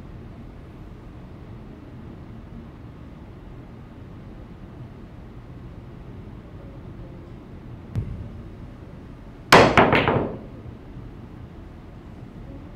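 Pool jump shot: a cue strikes the cue ball, and a quick cluster of sharp clacks follows as the cue ball hops and hits the one ball, about nine and a half seconds in. A faint knock comes a moment before it, over the steady hum of the room.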